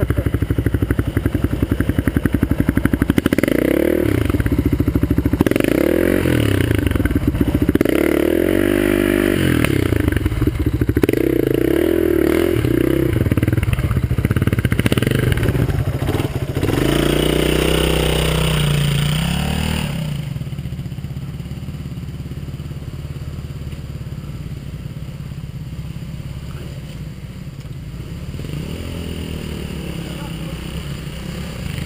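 Enduro dirt bike engine revving up and down as it climbs a rough forest trail. About twenty seconds in it drops to quieter, steadier running.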